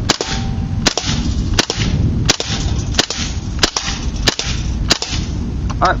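KWA MP7 gas-blowback airsoft gun on propane fired semi-automatically: eight sharp single shots, evenly spaced about two-thirds of a second apart.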